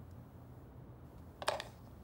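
A brief click, a cartoon sound effect of an anglepoise examination lamp, about one and a half seconds in, over faint room tone.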